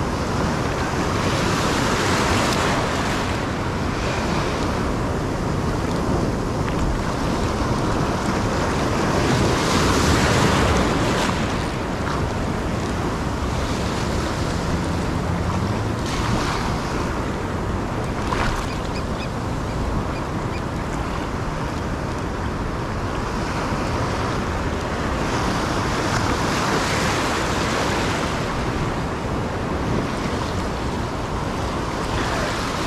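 Ocean surf: waves breaking and foamy water washing close around the microphone. The wash rises and falls in surges, loudest about ten seconds in.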